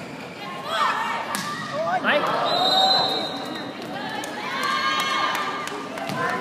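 Volleyball rally: a sharp smack of the ball about a second and a half in, players and spectators shouting, and a short steady blast of a referee's whistle about two and a half seconds in.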